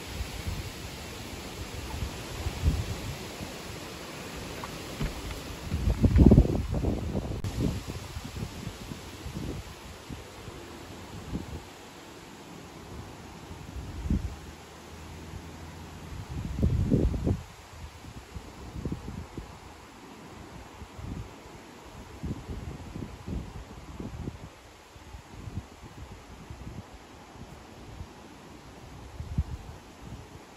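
Wind blowing through trees, with leaves rustling and gusts buffeting the microphone in low rumbles. The strongest gusts come about six seconds in and again around seventeen seconds.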